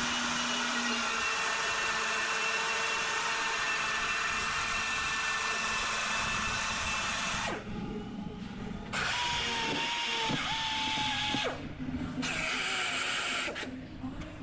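Pneumatic die grinder running with a steady high whine and air hiss as its burr trims a polypropylene weld bead on a plastic bumper cover. It cuts out about halfway through, then runs in two shorter spells, its pitch sagging and wavering as the burr bites into the plastic.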